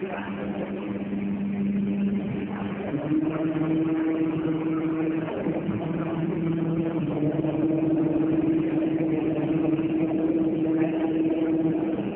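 Injection moulding machine running a cycle with its two-colour cap mould closed: a steady machine hum whose pitch shifts in steps a few times, about three seconds in and again around five and seven seconds.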